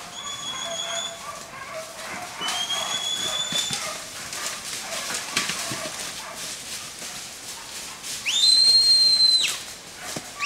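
A handler's whistle commands to a working border collie: three steady high whistles. The first two are short and level. The last, near the end, is the longest and loudest, bending up at its start and down at its end.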